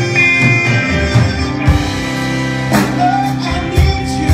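Live rock band playing, with electric guitars, bass, keyboard and a drum kit, and cymbal crashes every second or so.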